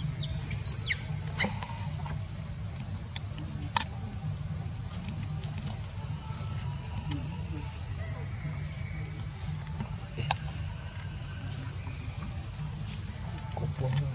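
A steady chorus of forest insects buzzing at a high pitch, over a low steady rumble. A few short high chirps, the loudest sounds, come about a second in, and there are single sharp clicks around four and ten seconds in.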